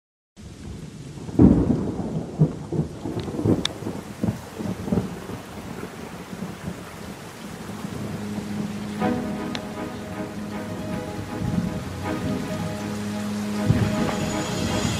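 Rain and rolling thunder, with a loud thunderclap about a second and a half in. Steady held chords of music come in about nine seconds in: the recorded intro of a pop song laid over the title cards.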